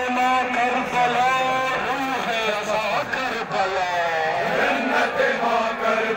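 Male voices chanting a nawha, a Shia mourning lament for Karbala, in long, wavering held notes.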